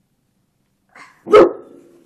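One loud, sudden dog bark a little over a second in, with a faint short sound just before it.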